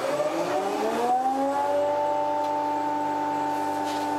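Electric motor of a bench woodworking machine spinning up: its hum rises in pitch for the first second or so, then settles into a steady running tone.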